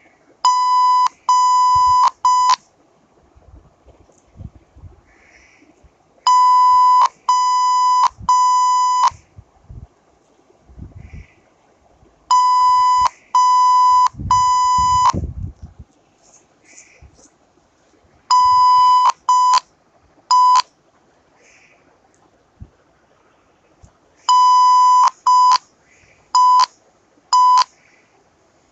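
Morse code played as a steady electronic beep tone, keyed in five spaced groups of long and short tones (dashes and dots): three groups of three long tones, then two groups that each open with a long tone followed by short ones. The beeps spell out an encoded message to be decoded by ear.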